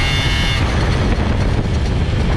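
Piaggio Zip scooter with a 70 cc DR two-stroke kit and an Arrow Focus exhaust, running under way. A high whine holds for about half a second at the start, then drops away, leaving the steady engine and road noise.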